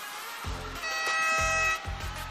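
Music with a steady beat, with a held, horn-like chord lasting about a second in the middle.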